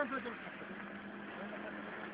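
A faint, steady engine hum under outdoor background noise, with the last word of a man's speech at the very start.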